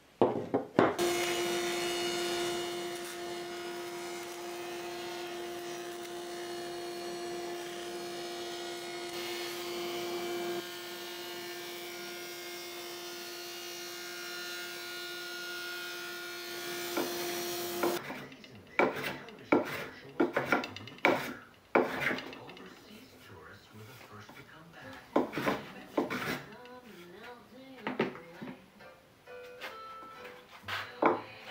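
Table saw running, its blade and motor giving a steady whine as a wooden workpiece is fed through it, then stopping suddenly. This is followed by scattered knocks and clicks of wooden pieces being handled.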